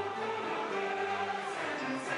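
A choir singing together, holding long sustained notes.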